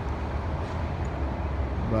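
Steady low rumble of city traffic.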